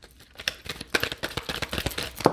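A deck of tarot cards shuffled by hand: a quick, uneven run of soft clicks and flicks as the cards slap against each other, starting about half a second in.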